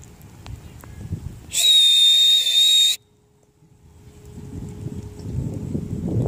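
A single loud, steady, high-pitched whistle lasting about a second and a half, blown to call horses in from the field. Before and after it a low rumbling noise builds toward the end.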